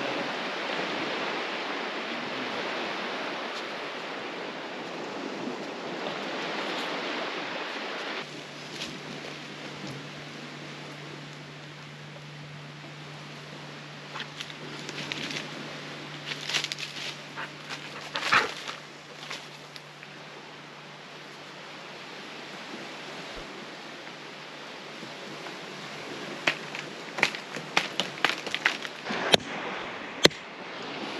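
Surf and wind rushing on the beach for the first eight seconds, then a sudden drop to a quieter background with scattered sharp clicks and knocks. Near the end comes a quick run of sharp strikes: a machete chopping into a coconut husk.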